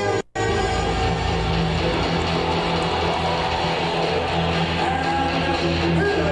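Guitar-driven rock entrance music played loud through an arena PA, with a heavy, steady bass line. A very short dropout in the recording comes just after the start.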